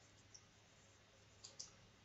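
Faint computer mouse clicks over near silence: one small click, then two quick clicks close together about a second and a half in.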